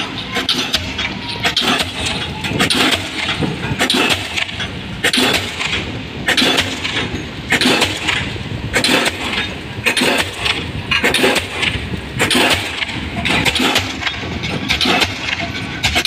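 Pile-driving hammer striking the head of a concrete spun pile in steady, evenly spaced blows, about one every 1.2 seconds, as the pile is driven down toward final set. Under the blows the crawler crane's engine runs continuously.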